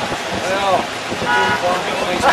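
Voices of several people talking outdoors, with a brief steady toot about one and a half seconds in.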